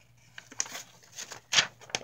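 Sheets of paper rustling as they are handled and flipped, with a soft rustle about half a second in and a louder one about one and a half seconds in.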